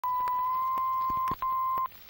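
A steady electronic test-tone beep held for over a second, breaking off briefly and sounding again for about half a second, with scattered crackling clicks and pops throughout, like a worn film print.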